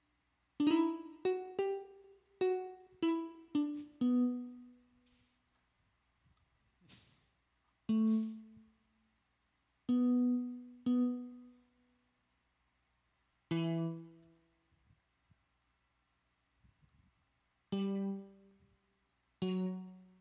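Single plucked notes from a software guitar instrument, each ringing briefly and dying away, as a guitar solo melody is played in. A quick run of about seven notes rises and then falls in the first four seconds, followed by single notes every two to four seconds.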